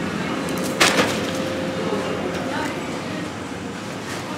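Supermarket shopping cart rolling over a tiled floor with a steady rolling noise and a sharp clack about a second in.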